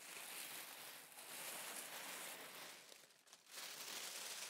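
Faint rustling of tissue paper as it is folded in over a dress lying in a box, in two spells with a short lull about three seconds in.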